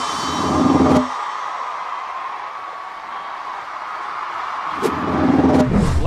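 Cinematic intro soundtrack. A heavy drum hit rings out and stops abruptly about a second in, leaving a steady drone. Near the end a sharp hit and a swelling low boom lead into the interview.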